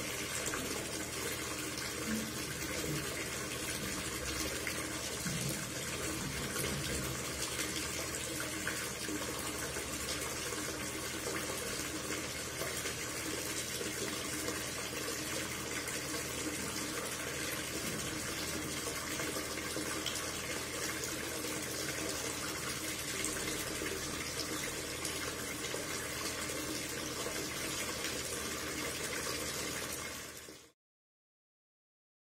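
Spring water pouring in a steady stream from a pipe outlet in a concrete wall and falling onto stones below.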